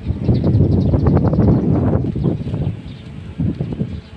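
Wind buffeting the microphone: a loud, gusty low rumble that eases after about two seconds.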